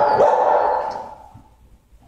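A dog barking in the shelter kennels, a last loud bark just after the start, the sound dying away within about a second.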